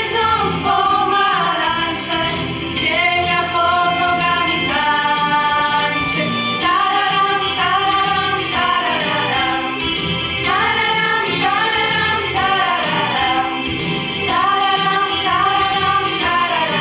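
Female choir singing, with long held notes that glide from one pitch to the next.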